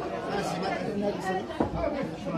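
Several people chattering at once in a room, voices overlapping, with a brief click about one and a half seconds in.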